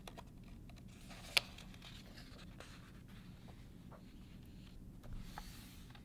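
Faint rustle and scrape of a picture book's paper page being turned by hand, with a single sharp tap about a second and a half in.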